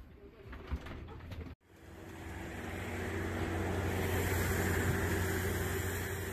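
Engine noise on an airport apron: a steady rumble with a low hum, starting after a sudden cut about one and a half seconds in, building to its loudest a little past the middle and easing slightly near the end. Before the cut, softer shuffling ambience.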